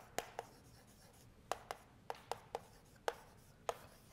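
Chalk writing on a blackboard: a string of about ten short, sharp taps and ticks of the chalk against the board, coming irregularly as letters and an arrow are written.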